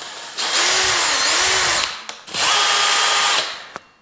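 Cordless drill running a hole saw through plasterboard to cut a switch-box hole, in two bursts of about a second and a half and a second. The motor's whine wavers in pitch during the first burst and holds steadier in the second.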